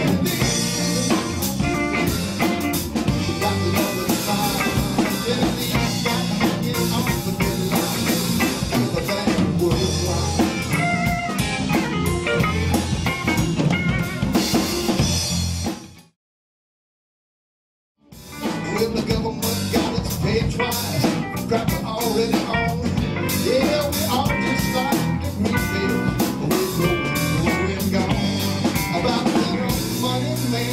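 Live country-blues band playing: electric guitar over electric bass and drum kit. About sixteen seconds in the sound cuts out completely for about two seconds, then the band is back.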